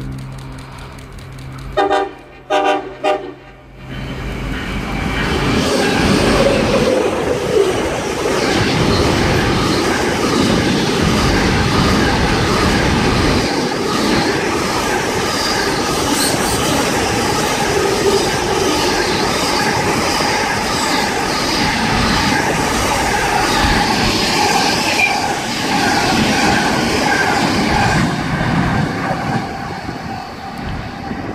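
Diesel freight locomotive horn gives three short blasts about two seconds in. Then two diesel locomotives and a long train of container wagons pass close by, with loud, steady wheel and wagon rolling noise and some high sustained ringing tones, easing slightly near the end.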